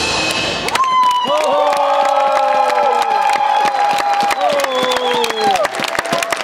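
Routine music cuts off under a second in, then spectators cheer with long, drawn-out shouts and clap.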